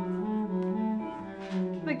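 Cello bowing long, sustained low notes, shifting to a new note a couple of times.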